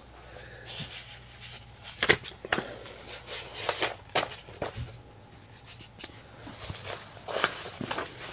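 Sheets of paper being shuffled and leafed through, with a few sharp taps and knocks on a table as the pages are handled.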